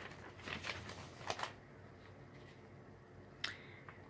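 A few faint small clicks and rustles over low room tone, then one sharper click near the end.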